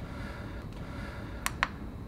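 Two quick clicks of a front-panel push button on a Matheson digital mass flow controller, about a second and a half in, over a steady background hum.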